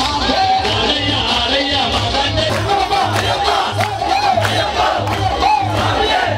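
A crowd of Ayyappa devotees shouting and chanting together over loud devotional music with a heavy, pulsing bass beat.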